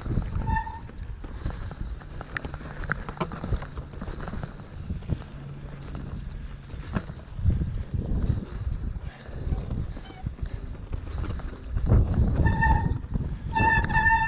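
Mountain bike rolling down a rocky singletrack: tyre rumble and wind on the microphone, with a steady clatter of knocks and rattles as the bike goes over the stones. Short, high, steady squeals come about half a second in and twice near the end.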